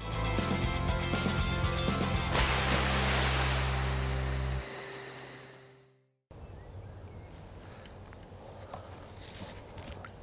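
Short programme jingle: music over sustained low bass notes, with a whoosh that swells in the middle, ending abruptly about six seconds in. After a brief gap, a quieter, steady outdoor background follows.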